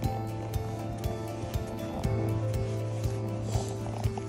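Background music with long held tones over a steady low note.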